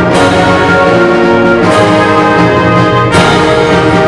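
High school concert band playing live: sustained wind and brass chords, with sharp accented chord changes a little under halfway through and again about three seconds in.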